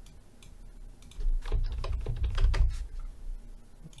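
Computer keyboard keystrokes: a quick run of key presses starting about a second in and lasting about two seconds, with dull thuds under the clicks.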